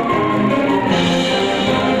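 Middle school concert band playing a medley of horror movie themes, clarinets among the instruments playing, in held chords that change about once a second.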